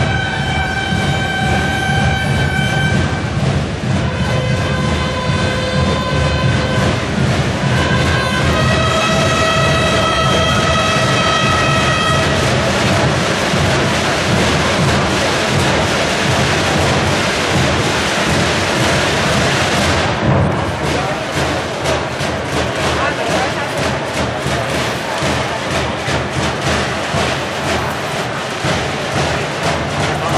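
Semana Santa procession band: a slow call of four long held brass notes at different pitches, each lasting a few seconds, over a continuous rumble of drums and bass drums. After the call, about twelve seconds in, the drumming carries on under the murmur of the crowd.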